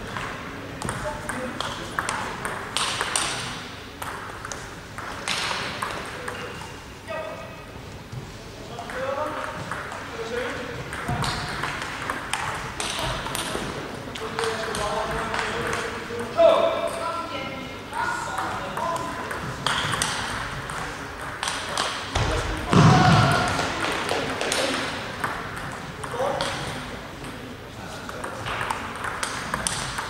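Table tennis ball repeatedly clicking off the rackets and the table in quick rallies, with voices in the hall between points.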